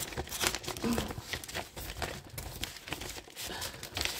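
Plastic packaging crinkling and rustling as it is handled, in a run of irregular crackles.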